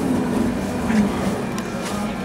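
Grape-crush machinery, the hopper's conveyor feeding grapes into a bladder press, running with a steady hum.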